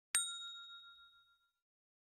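Notification-bell sound effect: a single bright ding that rings and fades away within about a second and a half.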